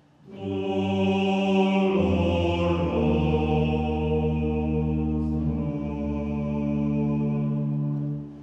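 Slow sung chant with long held notes, starting just after a brief silence; the notes change at about two and three seconds in.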